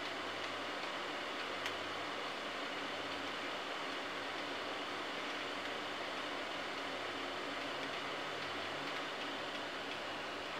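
Steady, even background hiss with a faint low hum and no distinct event, apart from one small click nearly two seconds in.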